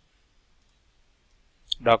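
Computer mouse clicks in a quiet room: a few faint ticks, then one sharp click near the end, followed by a man's voice.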